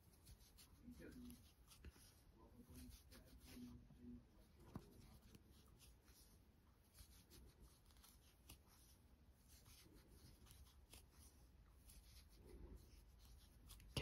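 Near silence, with faint soft rustling and light scattered ticks of yarn being worked with a metal crochet hook.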